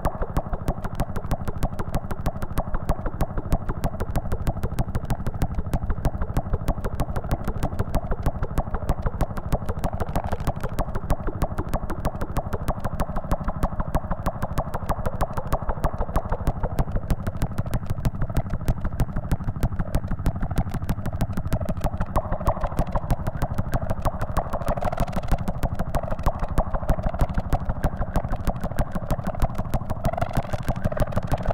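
No-input mixer feedback: a mixing desk fed back into itself gives a rapid, steady train of clicks over a low buzz and a noisy mid-range band, which grows brighter and wavers in the second half, like an idling engine.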